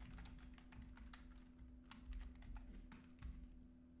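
Faint typing on a computer keyboard: a scatter of soft, irregular key clicks over a low steady hum.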